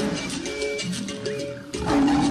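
Title theme music with a steady beat and sustained pitched notes.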